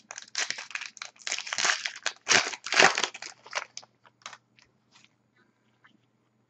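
A hockey card pack's wrapper being torn open and crinkled, a run of irregular crackling bursts that die away about four seconds in.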